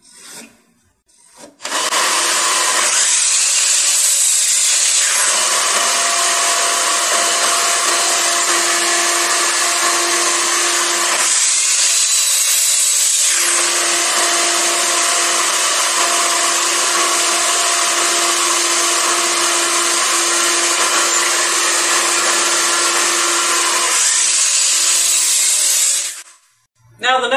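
Kobalt sliding compound miter saw running and cutting boards to length. The loud, steady sound starts a moment in and changes twice, about 3 s and 12 s in, as cuts are made.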